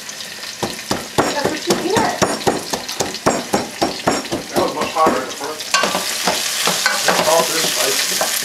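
Repeated sharp knocks, about three a second, of a wooden pestle crushing garlic in a ceramic bowl, over vegetables frying in a pot. The sizzle grows louder near the end.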